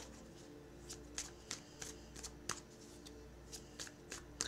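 A deck of tarot cards being shuffled by hand: faint, irregular crisp snaps and rustles of the cards sliding against each other.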